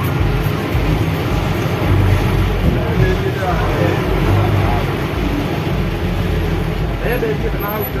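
Vehicle engine running with a steady low rumble, heard from inside the cab while crawling in dense traffic, with people's voices around it.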